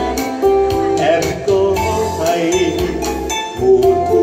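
Live music: a man singing into a microphone, holding long wavering notes, over a Yamaha electronic keyboard accompaniment with a steady programmed beat, amplified through a PA.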